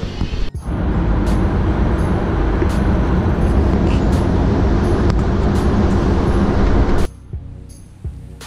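Loud wind buffeting and road noise from riding in the open bed of a moving pickup truck. It cuts off abruptly about seven seconds in.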